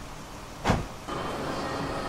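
A pickup truck's door shutting once with a short thump, followed by a steady background hum.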